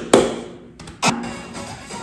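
A single sharp hand clap right at the start. About a second in, music cuts in suddenly with a sharp attack and carries on steadily.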